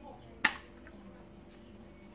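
Rubber bands of a fishing slingshot snapping once, sharply, about half a second in, as the drawn bands are let go.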